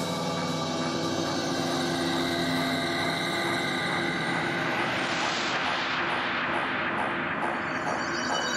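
Breakdown in a dark progressive psytrance mix, with no kick drum or bass: held, droning synth chords, and a hissing noise sweep that swells up in the middle and then falls back.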